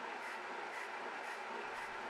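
Omega Supercharger high-pressure PCP air compressor running steadily and faintly, an even noise with little bass, as it pressurizes the air line to an SCBA tank.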